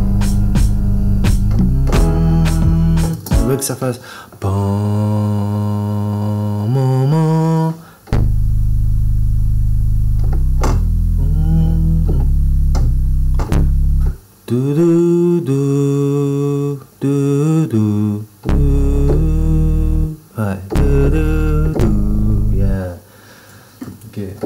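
Synth bass from the Alchemy 'Agile Synth Bass' preset played on a keyboard in short phrases of low sustained notes, a few of them sliding up or down in pitch. Sharp percussive clicks run under the first few seconds.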